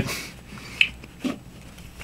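A pause in speech: faint room tone with two brief mouth sounds from the speaker, a lip click a little under a second in and a short breath or hum a moment later.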